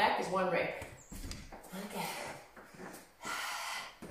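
A woman breathing hard during plank knee tucks: a few words at the start, then short puffs of breath and one longer forceful exhale near the end.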